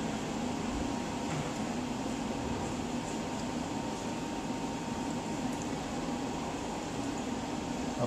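Aquaflame Model 500 flame-polishing gas generator running with a steady hum and hiss and a faint steady whine, as it makes gas for the opened torch.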